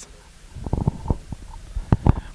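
Handling noise on a handheld microphone as it is passed from one person to another: a run of irregular low thumps and rubbing rumbles.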